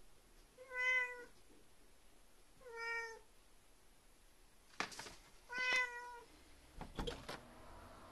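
A house cat meowing three times, short calls a couple of seconds apart, as it begs to be let outside. A few sharp clicks come between and after the later calls.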